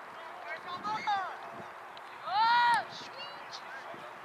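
Shouting voices across an open sports field: a couple of faint short calls, then one louder drawn-out shout about halfway through, over steady outdoor background noise.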